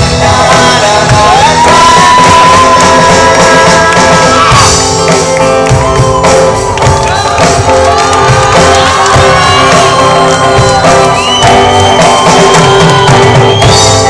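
Live band playing loud: electric and acoustic guitars, bass and drum kit, with a male vocalist singing long sliding notes over them. A high note is held for a couple of seconds near the end.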